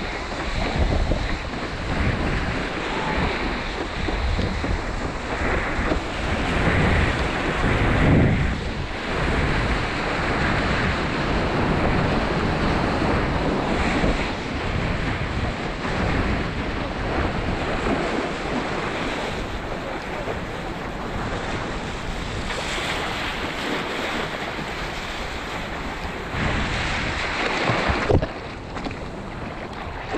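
Rushing water and breaking whitewater from a small wave being ridden on a longboard, with wind buffeting the microphone. The rush drops away sharply near the end.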